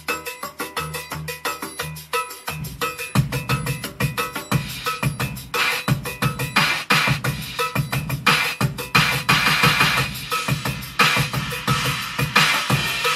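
Programmed percussion track played back through studio monitors: cowbell, triangle and bongo parts all layered at once in a dense, fast, even rhythm over short bass notes. A heavier low drum part joins about three seconds in.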